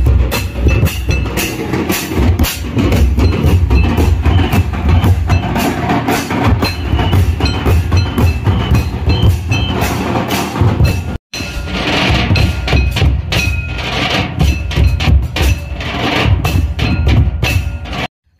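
A Santal drum troupe playing a fast, dense rhythm on large tamak drums set on woven cane stands, steel-shelled side drums and hand cymbals. The sound cuts out for an instant about eleven seconds in.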